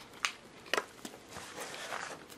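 A person biting into and chewing a large chicken burger close to the microphone: two sharp crunchy clicks in the first second, then softer mouth and chewing noises.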